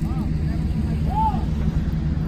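Steady low hum of a vehicle engine idling, with faint voices in the background.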